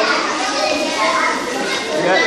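A room full of young children talking and chattering at once, a steady din of many overlapping high voices.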